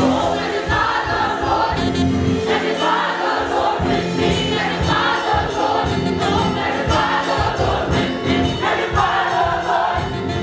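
Gospel mass choir singing in full voice, backed by a live band with organ, bass, piano and drums keeping a steady beat; the choir sings in phrases that swell and break off every second or two.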